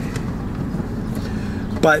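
Car running, heard from inside the cabin as a steady low hum.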